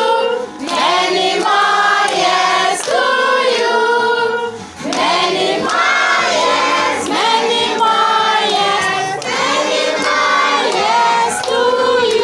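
A group of people singing a song together, loud and steady, with long held notes.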